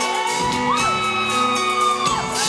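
Live band music echoing in a concert hall, with a high note that slides up about a second in and is held, and shouts and whoops from the crowd.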